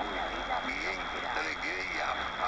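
A distant AM broadcast heard through a portable radio's speaker on 1350 kHz medium wave: a faint voice talking under heavy static hiss and a steady high tone, the weak signal of stations that share the frequency.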